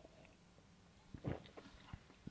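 A person swallowing a sip of beer: a soft gulp about a second in, followed by a few faint mouth sounds.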